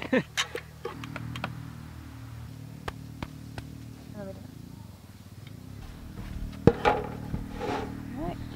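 A steady low engine drone from about a second in, with scattered light clicks and knocks as a wooden soil-block form and wet soil mix are handled, and brief snatches of voice.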